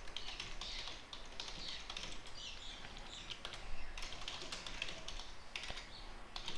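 Typing on a computer keyboard: a run of quick, light keystrokes.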